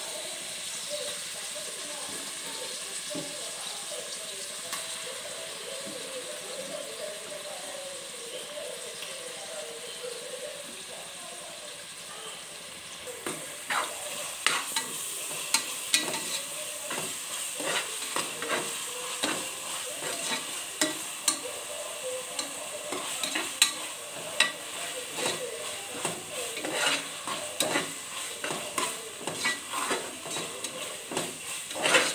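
Food sizzling in a pressure cooker on the stove; from about halfway through, a spoon stirs the wet mixture, scraping and knocking against the pot in quick irregular clicks.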